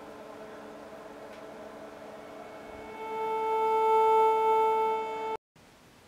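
Sine-wave tone from a homemade 8-bit R2R ladder DAC drawn in pencil graphite on paper and driven by an Arduino, low-pass filtered and played through Apple earbuds. It sounds pretty good. The steady tone comes in about three seconds in over a faint hum and cuts off suddenly about two and a half seconds later.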